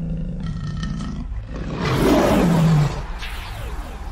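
Lion roar sound effect over a low drone in an animated logo sting; the roar is loudest about two seconds in and cuts off abruptly just under a second later.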